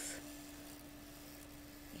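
Faint, steady hum of a wood lathe running with a maple bowl blank spinning, over a faint hiss; the hum stops near the end.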